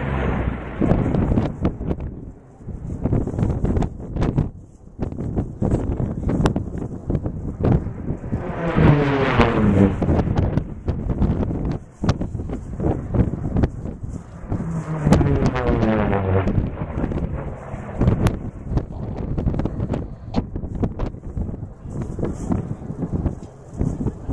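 Racing aircraft flying past twice, each engine's pitch falling as it goes by, over wind buffeting the microphone.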